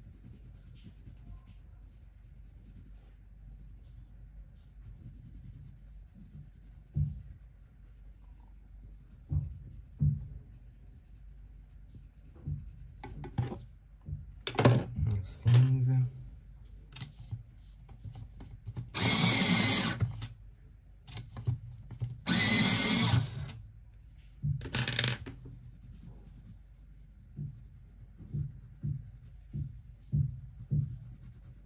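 A coloured pencil scratching softly on paper. This is broken up in the middle by several louder noisy bursts, two of them lasting over a second each.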